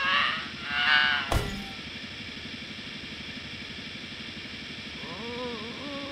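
Cartoon soundtrack: background music with a steady fast pulse. A character gives a wavering frightened cry in the first second, followed by a sharp hit. A character's laughter comes near the end.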